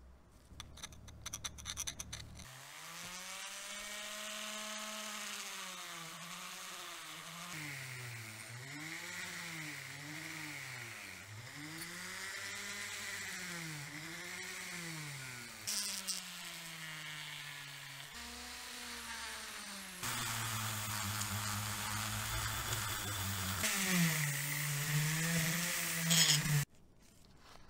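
A handheld rotary tool spins a brass wire brush wheel against an aluminium piston to clean deposits off it. Its motor pitch dips and recovers over and over as the brush is pressed on and eased off. After a few clicks at the start and a short break later on, a louder stretch of the same kind of rotary-tool work follows.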